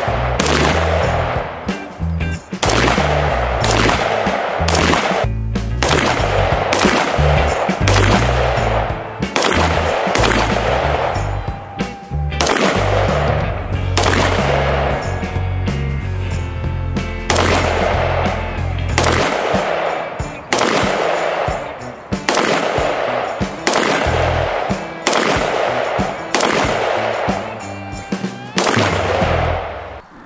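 Single shots from a 5.56 mm carbine, the MSBS Grot, fired one after another at an uneven pace of about one to two a second, each shot ringing briefly on the range. Music with a heavy bass beat plays under the shots and drops out about two-thirds of the way through, leaving the shots alone.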